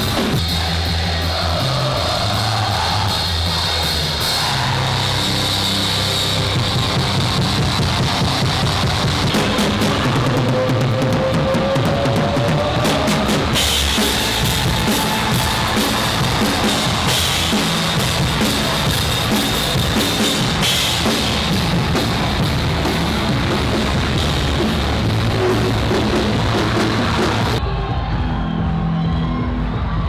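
Hardcore punk band playing live: distorted electric guitar over a pounding drum kit. About two seconds before the end the treble cuts off suddenly, leaving a muffled low sound.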